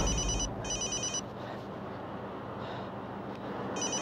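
A flip phone ringing with an electronic trilling ringtone: two short rings in quick succession about a second in, then a pause, then another ring near the end.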